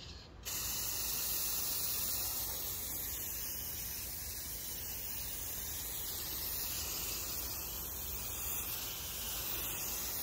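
Aerosol can of matte black spray paint spraying in one long, steady hiss that starts about half a second in.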